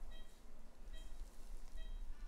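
Operating-room patient monitor beeping its pulse tone, three short high beeps a little under a second apart, over a steady low electrical hum.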